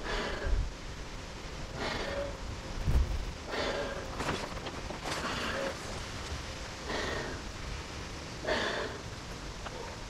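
A man inflating a 1969 military air mattress by mouth through its air nozzle: a long breath blown into the valve about every one and a half to two seconds, six in a row, with brief low thumps near the start and around three seconds in.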